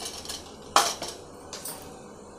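A steel spoon clinking sharply against a nonstick frying pan, one distinct strike just under a second in, with a few lighter ticks after it.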